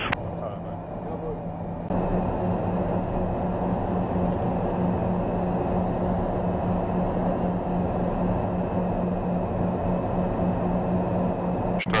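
Cabin drone of a Piper Cheyenne's twin turboprop engines and propellers heard inside the cockpit in flight: a steady low hum that steps up in loudness about two seconds in.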